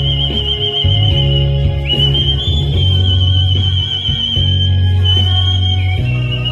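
Human whistling amplified through a stage microphone: long, high held notes with a wavering vibrato, stepping up in pitch about two seconds in, over a backing track with a steady bass line.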